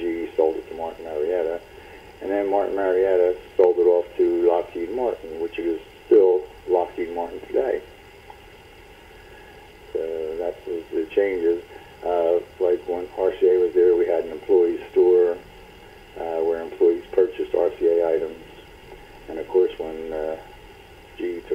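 Speech only: a person talking in short phrases with brief pauses.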